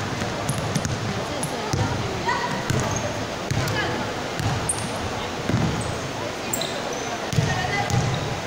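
A basketball being dribbled on an indoor court floor, making irregular thuds, mixed with short high squeaks from sneakers and players calling out.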